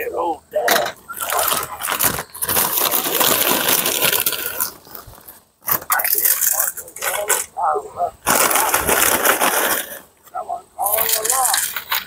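Crinkling of a plastic snack bag and crackling of corn chips being crushed by hand into a skillet, in several irregular bouts.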